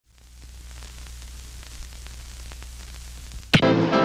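Steady static hiss with a low hum and faint crackles, fading in. About three and a half seconds in, music cuts in suddenly and much louder.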